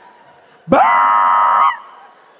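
A shrill, high-pitched vocal squeal or scream, rising sharply at its start and then held steady for about a second before stopping abruptly.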